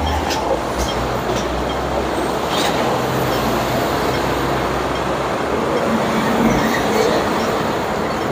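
Traffic noise: a double-decker bus drives past close by, a steady engine rumble and road noise that eases about six seconds in.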